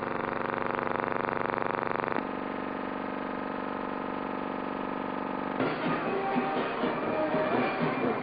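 Band music on a newsreel soundtrack: brass holding one long chord, changing to a second sustained chord about two seconds in, then breaking into a busier, rougher passage about five and a half seconds in.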